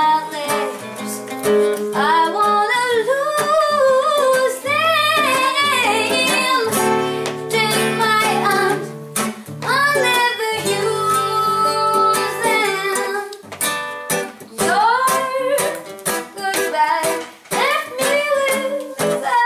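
A woman singing with vibrato, accompanied by a fingerpicked nylon-string classical guitar.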